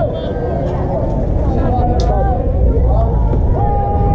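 Wind buffeting an action-camera microphone with a steady low rumble, under players' voices calling and chattering. One voice holds a long call near the end.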